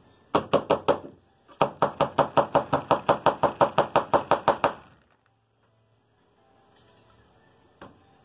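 A metal punch knocked repeatedly down inside a shotgun shell, seating a large pistol primer into the shell's 209 primer pocket until it sits flush. Four quick knocks, a short pause, then a fast even run of about twenty knocks, roughly six a second, which stops about five seconds in.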